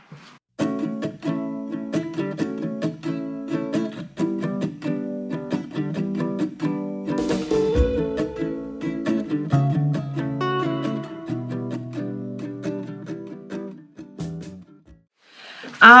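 Light instrumental background music played on plucked strings, with note after note ringing out. It fades out about two seconds before the end.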